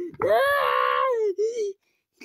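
A child's high voice in one long drawn-out wail of about a second, its pitch wavering and then sliding down at the end, followed by a shorter, lower sound.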